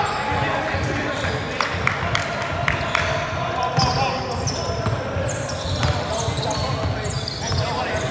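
Basketball game in play: a basketball bouncing on an indoor court with short, sharp knocks, and sneakers squeaking on the floor, over players' voices.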